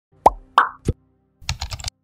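Intro-animation sound effects: three short bubbly plops, each a quick pitch sweep and the third one lower, then a quick run of keyboard-typing clicks as text is typed into a search bar.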